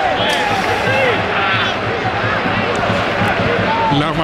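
Male voices talking over the steady background noise of a stadium crowd, as heard on a football television broadcast.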